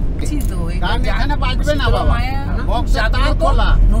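Steady low rumble of a car's road and engine noise heard from inside the cabin, under a woman talking.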